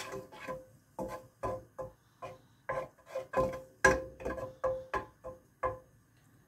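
Wooden spatula scraping around a non-stick frying pan in short, irregular strokes, about two or three a second, each with a brief ringing tone, as it spreads butter melting in the pan.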